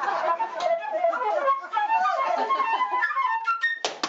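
Flute playing fast runs of short notes, rising to a few higher notes near the end, cut off by a single sharp knock.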